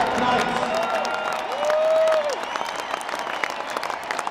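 Large stadium crowd applauding and cheering as a team runs onto the field, with an echoing public-address announcer's voice drawing out one long word over it about a second and a half in.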